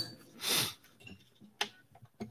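A short rush of noise close to the microphone about half a second in, then a single faint click about a second later.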